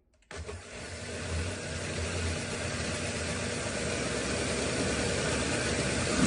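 Countertop blender motor switched on, starting abruptly and running steadily as it blends a thin liquid batter of milk, oil and eggs, with a low hum under the whirring.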